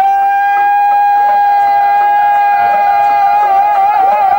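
A long held sung note in Punjabi dhadi singing, entered with a short upward slide. It stays steady on one pitch for about three seconds, then wavers into an ornament near the end. Faint dhad taps and sarangi sound lie underneath.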